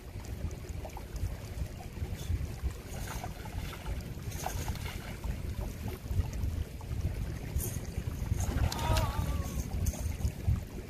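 Wind buffeting the microphone in a steady, gusting low rumble, with a few faint ticks. A brief wavering pitched sound comes near the end.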